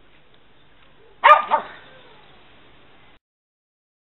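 A dog barking twice in quick succession, two short loud barks over a faint background hiss.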